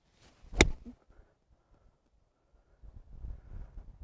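An eight iron striking a golf ball off the turf: a single sharp crack about half a second in. A low rumble follows near the end.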